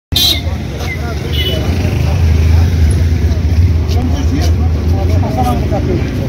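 Several people talking in a street crowd over a loud, steady low rumble, with a few short knocks. The sound starts suddenly just after the beginning, and the voices grow clearer near the end.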